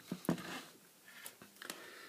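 A few soft clicks and light handling noise as test-lead plugs are pushed into the input sockets of a digital multimeter.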